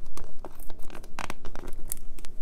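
Sticker sheet crinkling and crackling as it is handled and turned over, with a sticker peeled from its backing: a run of short, sharp crackles.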